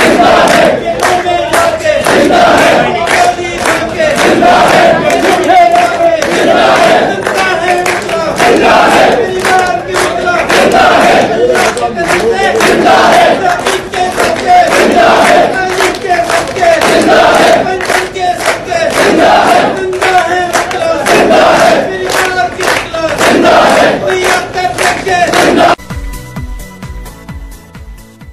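A crowd of lawyers loudly chanting anti-government slogans in Urdu, many voices shouting together in repeated phrases.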